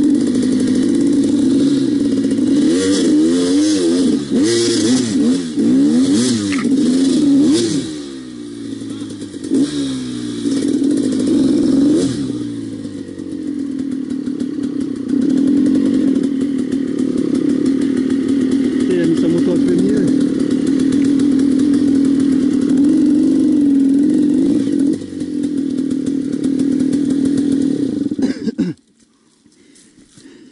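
Dirt bike engine revving up and down in repeated bursts, then running more steadily, until it cuts off suddenly near the end.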